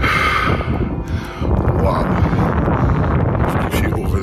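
Wind buffeting the phone's microphone, a steady low rumble, with a brief burst of voice in the first second.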